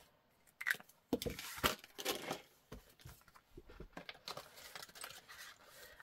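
Handling of a ring binder's clear plastic pockets and paper cards: a cluster of sharp clicks and crinkles about a second in, then softer rustling.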